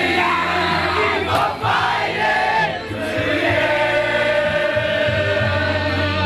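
A group of footballers singing loudly together in a celebration chant, without a break.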